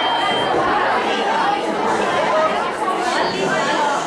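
Many voices talking at once, a steady hubbub of overlapping chatter.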